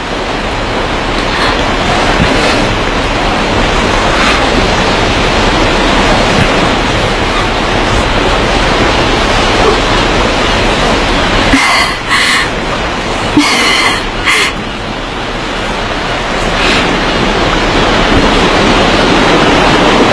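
Sea surf washing steadily, a loud even rush of breaking water, with a few short bird calls about twelve to fourteen seconds in.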